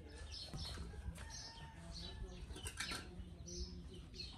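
Birds chirping outdoors: short high calls, several a second, over a low steady rumble, with a brief flurry of sharper sounds about three seconds in.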